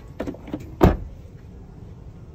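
A 2017 Porsche Panamera's door being opened by hand: a small click, then one sharp, heavy clunk of the latch letting go just under a second in.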